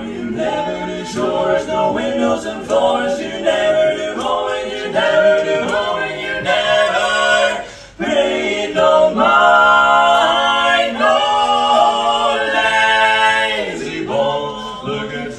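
Male barbershop quartet singing a cappella in four-part close harmony. The sound breaks off briefly just before eight seconds in, then comes back louder with longer held chords.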